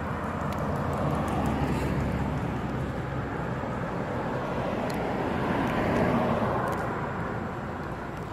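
Distant engine noise: a steady rushing rumble that swells a second or two in and again about three quarters of the way through, with a few faint light clicks.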